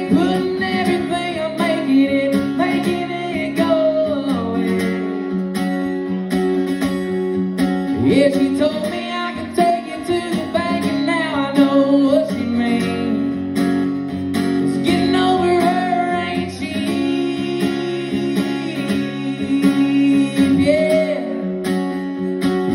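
Acoustic guitar strummed steadily, with a singing voice carrying a wavering melody over it in several phrases.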